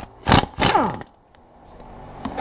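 Pneumatic impact wrench triggered in two short bursts within the first second, the second winding down with a falling pitch after the trigger is let go.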